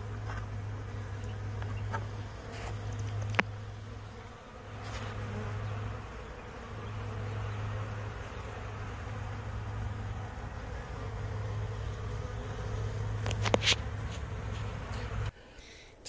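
A mass of honeybees clustered at a crowded hive entrance, buzzing in a steady hum with a couple of brief knocks; the hum cuts off shortly before the end.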